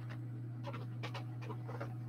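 A steady low hum, with a few soft, irregular clicks and taps as hard resin castings in silicone molds are handled and shifted on a table.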